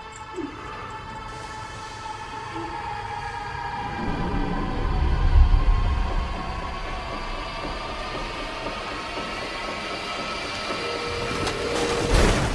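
Tense, suspenseful film score of held high tones, one of them slowly falling, with a deep rumble that swells up about halfway through. A couple of sharp cracks come right at the end.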